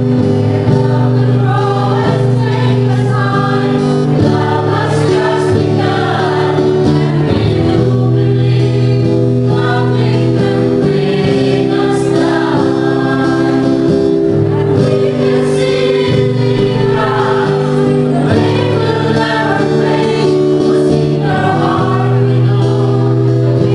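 A small choir of women and men singing together, accompanied by an acoustic guitar.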